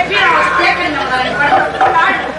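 Loud spoken stage dialogue through a microphone and PA system.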